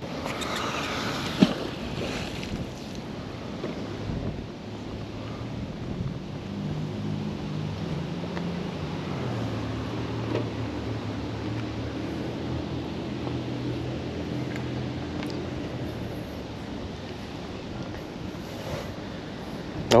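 Outdoor ambience of wind on the microphone over a low, wavering engine hum from a distance, with a single sharp knock about a second and a half in.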